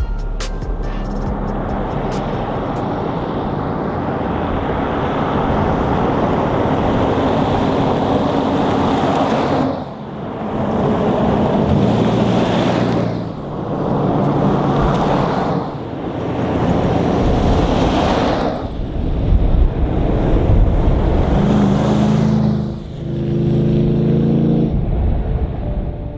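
A convoy of four-wheel-drives passing on a sealed road one after another, engines and tyre noise swelling and fading every few seconds as each vehicle goes by, with music playing underneath.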